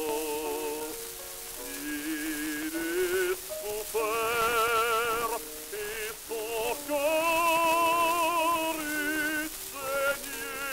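Operatic baritone singing with wide vibrato on an acoustic disc recording from around 1905, with steady surface hiss and crackle from the record. Long held notes begin about four and about seven seconds in.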